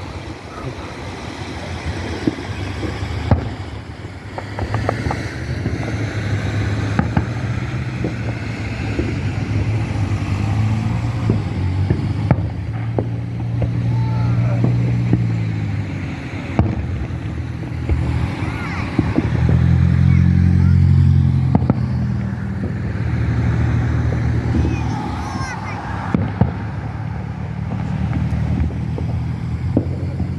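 Aerial fireworks shells launching and bursting, heard as repeated sharp bangs and crackles, over the steady low hum of an engine running nearby that swells twice in the middle of the stretch. People's voices are mixed in.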